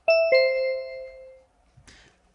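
Two-note descending electronic chime, a "ding-dong" with a higher note and then a lower one that rings on and fades out over about a second, typical of the signal tone in a recorded English listening test marking the end of an item's dialogue.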